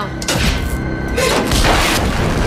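Heavy booms and a rushing surge of noise from a fire or blast sound effect, with music underneath; the surge swells louder near the end.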